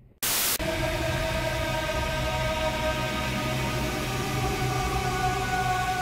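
A sudden short burst of static, then a steady droning sound: several held tones over a constant static hiss, at an even level.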